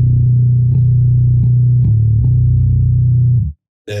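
Fender Precision Bass tuned to Drop B, picked on the open low string in repeated notes with a note at the third fret. It is cut off sharply about three and a half seconds in.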